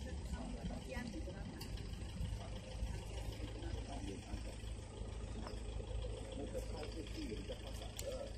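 Faint, indistinct voices of people talking over a steady low rumble.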